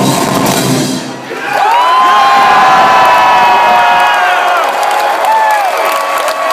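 A live metal band's song ends about a second in, and a concert crowd cheers, with long high-pitched whoops and screams held over the noise.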